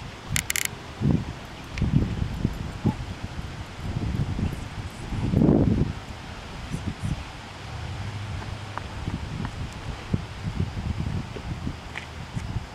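Wind gusting over the microphone outdoors, a broken low rumble that swells strongest about five and a half seconds in, with a short high clink just after the start.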